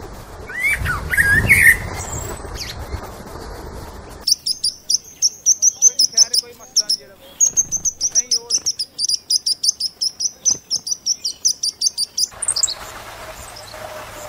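A small bird chirping in a fast, even series of high chirps, about six a second, starting about four seconds in and stopping abruptly about twelve seconds in. Before it come a few short rising calls over a low rumble.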